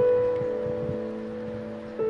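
Slow, soft piano music: a chord struck at the start rings on and slowly fades, and the next chord is struck near the end.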